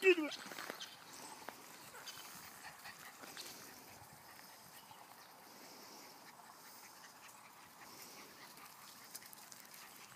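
A short, loud cry falling in pitch right at the start, then faint rustling and light ticks of Australian Shepherd puppies moving about on grass and gravel.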